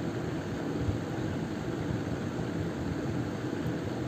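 Steady low background hum, the room noise of the recording, with no distinct events.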